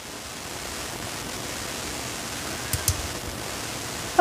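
Steady hiss of background noise, with two light clicks close together a little under three seconds in.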